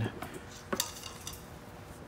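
Faint handling of an old black rubber air hose as it is pulled up out of a box, with small rubs and ticks and one sharp light click about three quarters of a second in.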